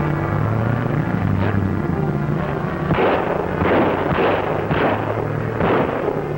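Background music, then from about halfway in about five pistol shots, about half a second apart.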